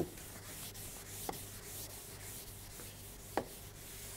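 Blackboard eraser rubbing across a chalkboard, wiping off chalk, with two light knocks along the way.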